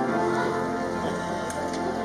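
Keyboard music: the closing chord of a hymn introduction held and fading, over a light rustle in the room.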